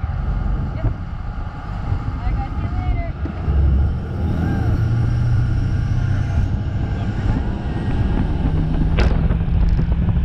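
Parasail boat underway: its engine runs with a low, steady hum under wind and rushing water. A faint rising whine comes in over the second half, and there is a single sharp click near the end.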